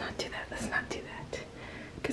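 Light scratching and ticking: a small pet rat's claws scrabbling on a smooth bathtub wall as it tries to climb out, half a dozen short ticks in the first second and a half.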